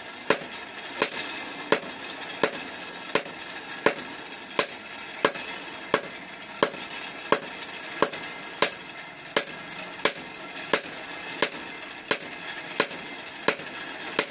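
A hand hammer striking a red-hot steel sickle blade on a small anvil as it is forged. The blows are sharp, single and evenly paced, about three every two seconds.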